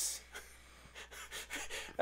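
Soft breaths close to a microphone: a few faint, breathy puffs with no voice, over a low steady hum.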